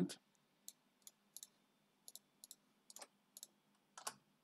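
Faint, irregular clicks of a computer mouse and keyboard, about a dozen of them, as a command is copied from a web page and pasted into a terminal.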